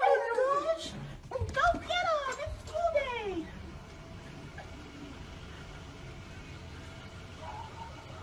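A dog whining excitedly in several high, falling whines over the first three seconds or so, mixed with a person's excited voice. After that only faint, steady outdoor background noise.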